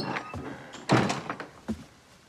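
A wooden lattice door handled: a sharp knock about a second in, then a lighter knock near the end.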